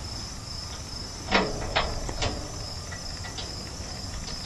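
Insects chirring steadily in the background. A few light metallic knocks come between about one and a half and two and a quarter seconds in, as the center pin and mount of the clamp-on snow blade are handled.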